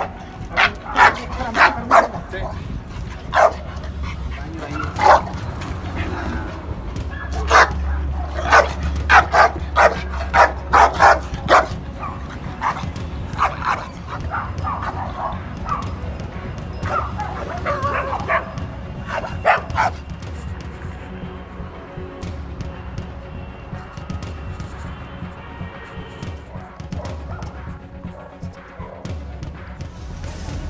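Dog barking in repeated sharp barks, often several in quick succession, through the first two-thirds, then stopping; the barking is that of a dog reacting before behaviour-modification training.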